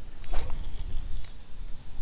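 Low rumble of handling and wind on a head-worn action camera's microphone as an arm swings out over the water, with one brief swish about a third of a second in.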